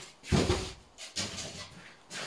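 A single dull thump about a third of a second in, followed by a fainter short knock about a second in.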